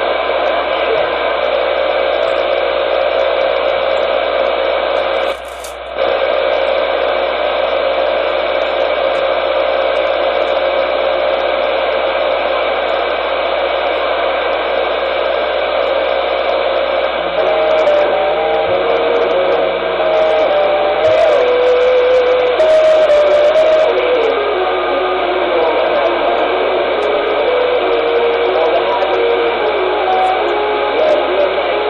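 A Ranger CB-band radio transceiver's speaker giving out steady, loud hiss and static with a faint steady tone through it, with a short dip about five seconds in. From about halfway, a tone wavers and steps up and down in pitch over the hiss.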